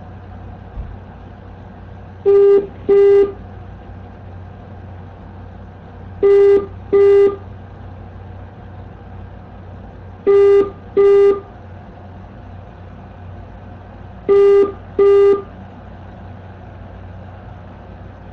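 Telephone ringback tone heard on the caller's end, a steady low tone sounding in four double rings about four seconds apart: the call is ringing unanswered. A faint steady line hum runs underneath.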